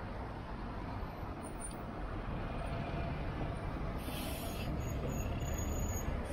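Road traffic at a city junction: a steady low engine rumble that slowly builds as a large coach draws near. A short high hiss comes about four seconds in.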